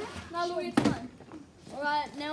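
Children's voices calling out, with one short, sharp burst a little under a second in that is the loudest sound.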